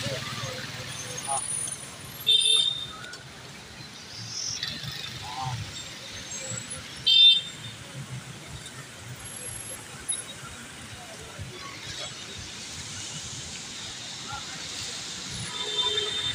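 Road traffic on a flooded, waterlogged street, a steady low rumble of engines, with two short vehicle horn toots, about two and a half seconds in and again about seven seconds in.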